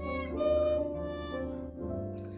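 Violin played slowly in long held notes, a melody that sounds like an old Japanese song, heard over a video-call connection with a steady low hum underneath.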